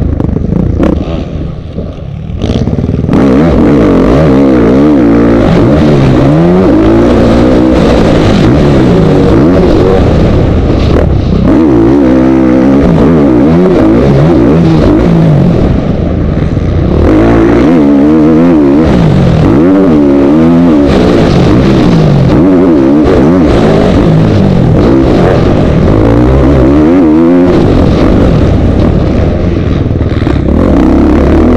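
Motocross bike engine heard from on board the bike, very loud and revving up and down over and over as the rider opens and closes the throttle around the dirt track. It drops off briefly about two seconds in, then runs loud again.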